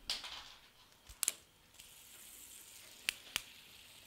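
A few sharp, isolated clicks over a faint high hiss: hands and spinning fidget spinners working right at the camera. One click comes at the start, two about a second in, and two more near the three-second mark.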